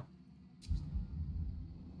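Online slot game's spin sound: a short click about two-thirds of a second in as the auto-spin starts, followed by a low rumble under the turning reels.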